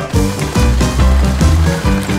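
Background music with a steady beat and heavy bass.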